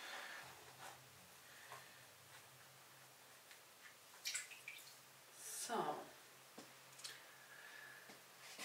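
Water wrung from a kitchen dish sponge dripping and trickling back into a plastic tub of paper-pulp water, faint, with a short splash about four seconds in.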